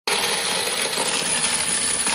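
Hundreds of NT$50 coins pouring from a plastic tub into a coin-counting machine's hopper: a steady, unbroken cascade of clinking metal coins.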